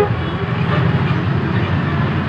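Steady low mechanical hum and rumble of running machinery.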